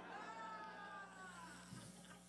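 A faint, high-pitched drawn-out voice that slides slightly downward and fades after about a second and a half, over a low steady hum.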